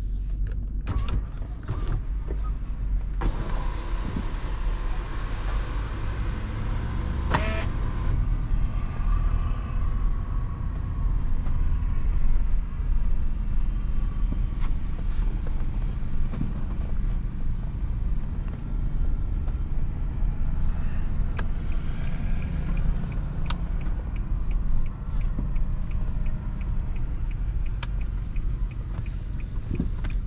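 Inside the cabin of a Nissan Patrol on the move, its 5.6-litre petrol V8 gives a steady low rumble under tyre and wind noise. The wind and road hiss rises about three seconds in. Scattered clicks and knocks come through, a sharp one about seven seconds in, with small regular ticks near the end.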